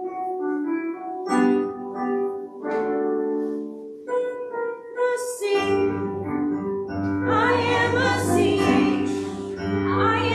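Keyboard accompaniment playing held notes of a simple children's song, with a low bass coming in about halfway and several voices singing along in the later part; the song spells out a word.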